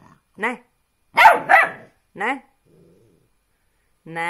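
Puppy barking in a string of about five short, high barks in the first two and a half seconds, followed by a brief faint growl.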